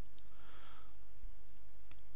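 Faint clicks of a computer keyboard being typed on, over a steady low electrical hum.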